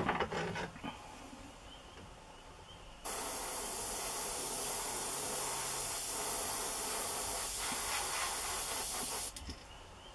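Airbrush spraying paint through netting held over a fishing lure: one steady hiss lasting about six seconds, starting and stopping sharply. A few short handling clicks and knocks come right at the start.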